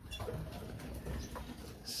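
Faint, scattered chirps of small cage birds, canaries and finches.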